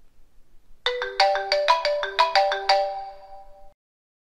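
Short electronic sound-logo jingle: about a dozen quick, bright notes of a melody at changing pitches, each ringing on. It starts about a second in and fades out near the end.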